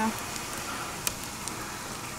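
Pigs rooting and shuffling in wood-chip bedding: a faint crackling rustle, with a single sharp click about a second in.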